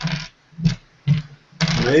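Men's voices in short snatches of talk, with brief gaps, then steady speech starting near the end.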